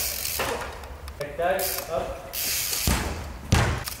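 A single heavy thump about three and a half seconds in, as the football is struck during a bike-and-ball shot attempt, amid faint voices and brief scuffing noises from the bike on artificial turf.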